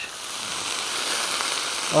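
A splash of spiced rum hitting onions, peppers and mushrooms on a hot steel flat-top griddle, sizzling. The sizzle grows louder over the first second and then holds steady.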